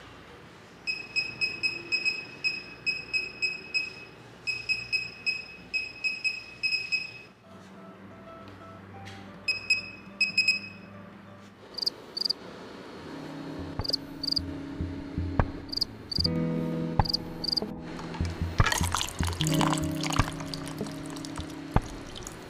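Short high electronic beeps, about two a second in runs of several, as keys are tapped on a laser projection keyboard. Later, background music plays, with a brief splash of pouring liquid near the end.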